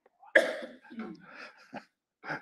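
A man coughing: one sharp cough about a third of a second in, followed by weaker coughs and throat clearing.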